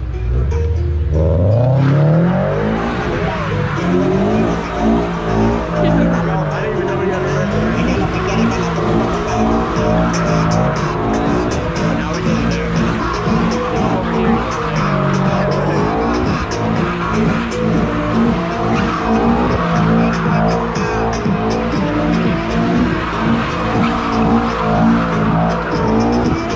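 A car spinning donuts: the engine revs climb over the first two seconds, then rise and fall again and again at high revs, with the rear tyres squealing as they spin on the asphalt.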